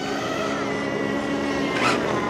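Radio-controlled buggy's motor running steadily as it drives across asphalt, a low hum with a thin high whine that drops a little near the end.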